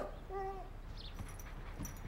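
A short, soft whimper from the cartoon dog.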